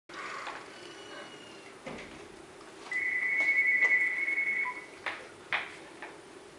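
A phone ringing: a steady electronic two-tone ring held for about two seconds, followed by two sharp clicks.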